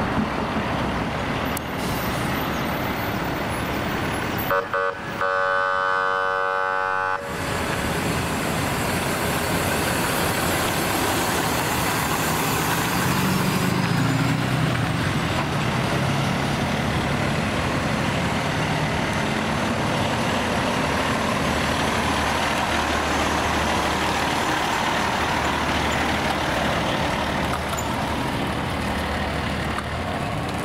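Fire trucks' engines running and pulling away, with heavy engine and road noise. About five seconds in there is a brief steady horn-like tone lasting a couple of seconds.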